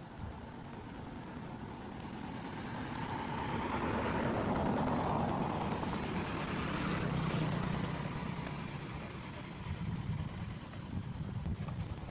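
A motor vehicle passing by: its engine and road noise swell to a peak about four to eight seconds in, then fade off.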